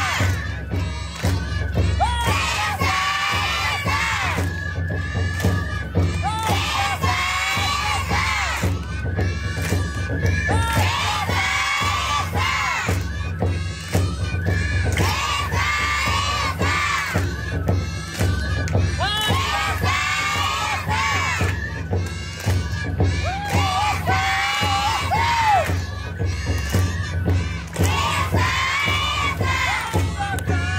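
A group of young children shouting rhythmic chanted calls in unison to drive a shishimai lion dance, a new call about every two seconds, over festival accompaniment.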